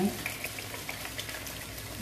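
Fried rice sizzling in a hot frying pan as fish sauce is poured over it from a bottle, a steady sizzle with a few small crackles.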